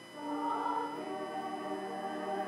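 Small church choir singing. There is a brief break right at the start, then the next phrase comes in on held notes.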